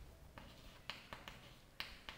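Chalk on a chalkboard while writing: several faint, sharp clicks as the chalk strikes and lifts from the board.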